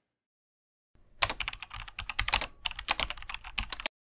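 Computer keyboard typing sound effect: a fast run of key clicks that starts about a second in and stops just before the end, as the quiz clue text is typed out on screen.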